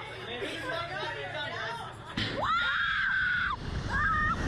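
Slingshot reverse-bungee ride launching: nervous chatter from the riders, then a sudden bang about halfway in as the capsule is released. One rider lets out a long, high scream as it is flung upward, and rushing wind rises under it near the end.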